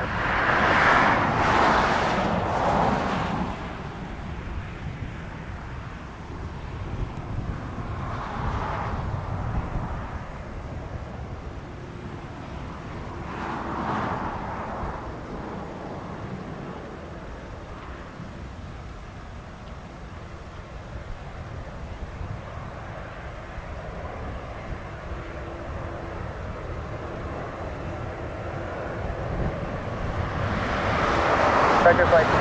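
Boeing 737-800's CFM56 jet engines on final approach, a steady distant rumble that grows louder near the end as the airliner comes closer. A louder rush of noise sits in the first few seconds.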